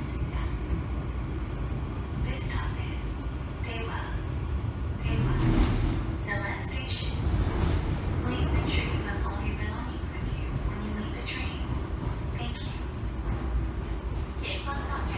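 Steady low rumble of a Seoul Metro Line 3 subway car running on the track, heard inside the cabin, with scattered short higher-pitched rattles and squeaks. Voices are heard over it.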